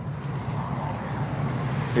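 Steady low outdoor rumble of street noise, with wind on the phone's microphone and a few faint clicks.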